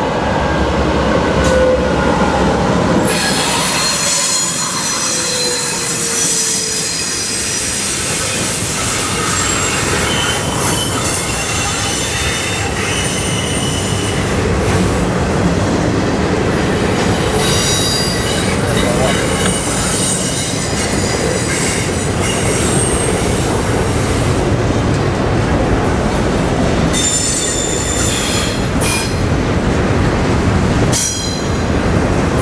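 Two Canadian National diesel locomotives pass, their sound falling in pitch over the first few seconds. A long double-stack container freight train follows, with a steady rumble of wheels on rail and high-pitched wheel squeal that comes and goes.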